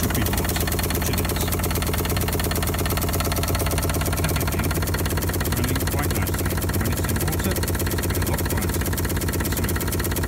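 Steam launch's vertical steam feed pump running steadily with a fast, even mechanical beat over a constant low hum, pumping feed water through the newly built exhaust heat exchanger to the boiler.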